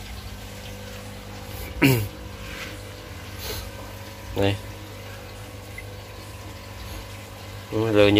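A steady low hum runs throughout. Two short voice sounds break in, about two seconds in and about four and a half seconds in, the first falling in pitch.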